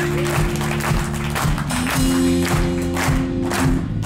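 Live blues-rock trio playing an instrumental passage: electric guitar and bass guitar hold sustained chords that change about halfway through, over a steady drumbeat on the drum kit.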